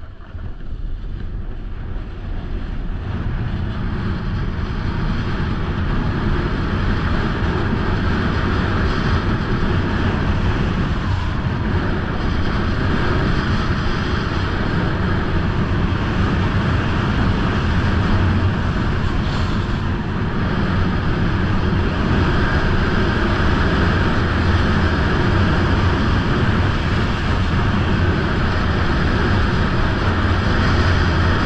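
Wind rushing over an action camera's microphone, mixed with a snowboard sliding and scraping over packed snow during a downhill run. It builds over the first few seconds as the board picks up speed, then holds steady.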